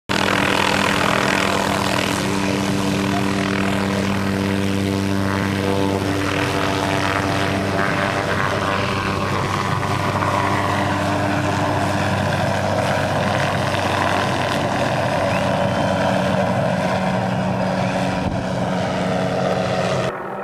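Small helicopter lifting off and climbing away, its rotor and engine running loud and steady, with the pitch shifting about a third of the way in and again later as it gains height.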